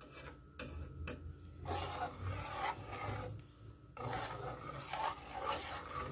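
Metal ladle stirring thick dal in a stainless steel pot, scraping against the pot in several rough strokes with a short pause in the middle.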